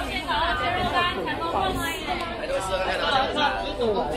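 Many voices talking over one another: the chatter of shoppers and stallholders in a crowded street market.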